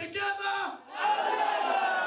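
Men shouting loudly: short shouts, then about a second in one long drawn-out yell.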